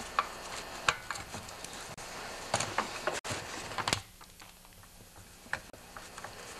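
Scattered sharp clicks and knocks of a T27 Torx screwdriver and gloved hands working the bottom screws on the metal crankcase of a Stihl TS 420 cut-off saw, loosening the screws that hold the cylinder on.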